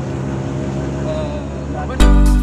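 Engine of an auto-rickshaw running steadily, heard from inside its open cabin, with a low even hum.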